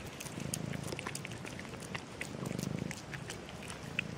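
A cat purring in low rippling swells, twice, over small scattered clicks of cats chewing food from a plastic tub.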